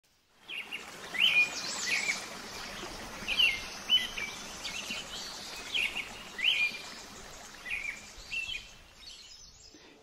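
Birds chirping: short calls repeated roughly every second, often in pairs, over a steady background hiss.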